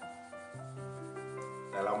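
Soft rubbing of a blending tool over graphite pencil shading on paper, blending the dark tones. Background music with a few held notes plays underneath.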